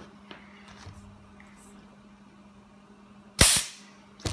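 Pneumatic staple gun firing once about three and a half seconds in, a sharp crack with a short hiss trailing off, as it drives a staple through the convertible top's rear-window material. A few faint handling clicks come before it.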